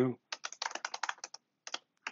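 Typing on a computer keyboard: a quick run of about a dozen keystrokes over about a second, then two more keystrokes near the end, typing a terminal command.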